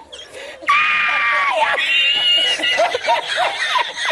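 A man laughing uncontrollably: after a brief pause, a long high-pitched squeal of a laugh begins just under a second in, a second, higher squeal follows, and then a run of quick short bursts of laughter.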